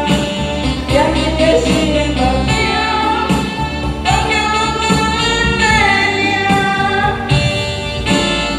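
A woman singing a pop ballad into a microphone over a karaoke backing track, holding some long notes.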